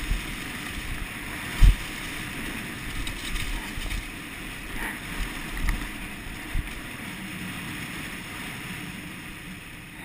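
Wind buffeting the microphone of a helmet-mounted action camera as a downhill mountain bike rolls fast over a leaf-covered dirt trail and onto pavement, with knocks from the bike over bumps, the sharpest about a second and a half in. The rushing eases near the end.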